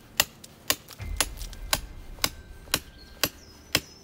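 Hand hammer striking and splitting shale slabs in a steady rhythm, about two sharp knocks a second.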